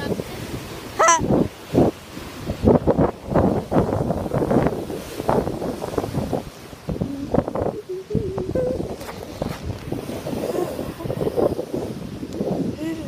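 Wind buffeting the microphone over surf washing on the shore, with irregular thumps and handling knocks as someone runs across beach sand holding the camera. A short high-pitched rising cry comes about a second in.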